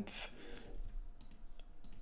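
Irregular sharp clicks from a computer keyboard and mouse, following a short rush of noise at the start.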